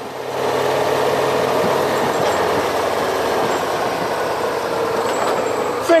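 A motor vehicle running steadily: an even rush of engine and road noise that holds level throughout, with a faint hum underneath.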